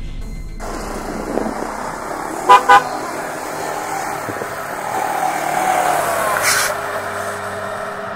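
Car horn giving two short toots in quick succession, over a vehicle engine running, which swells louder about five seconds in.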